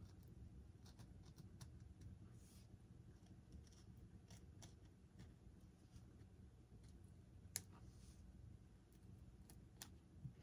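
Faint scratching and clicking of a hobby knife blade worked up and down in a channel cut into a model jet's foam tail fin, with one sharper click about seven and a half seconds in.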